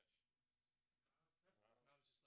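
Near silence, with a faint voice in the second half.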